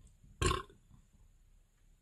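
A man's single short belch, about half a second in.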